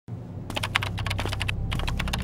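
Rapid computer-keyboard typing sound effect, a quick irregular run of key clicks starting about half a second in, over a low steady drone. It goes with a mission caption being typed out on screen letter by letter.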